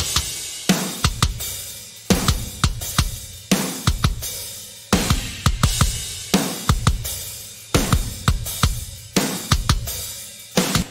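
A rock drum kit groove played back from samples, its kick drum from the Drum Vault Kick Arsenal Vibe Room library with the in mic and the parallel-compression mic blended, over snare, hi-hat and cymbals. Sharp kick and snare hits repeat in a steady pattern.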